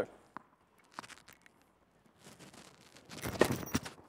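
Tennis racket striking the ball on a spin second serve about three seconds in, with shoe scuffs on the hard court around the hit. A few faint taps come before it.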